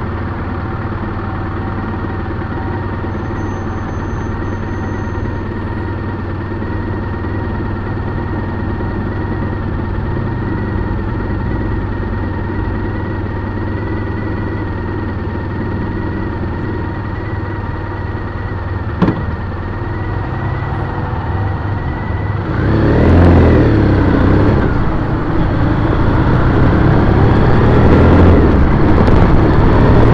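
2010 Triumph Bonneville T100's air-cooled parallel-twin engine idling steadily, with one sharp click about two-thirds of the way through. It then revs up and the bike pulls away, louder, with wind rushing over the microphone.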